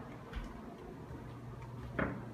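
Quiet indoor room noise with one soft low thump about a third of a second in and a few faint ticks.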